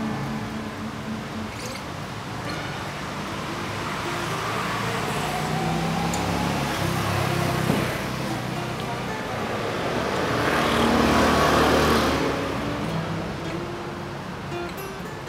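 Acoustic guitar being fingerpicked, with road traffic noise swelling over it. The traffic builds through the middle, is loudest about eleven seconds in, then fades, leaving the guitar notes clear again near the end.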